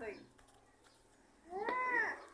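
A single short animal call, about half a second long, rising and then falling in pitch, about one and a half seconds in.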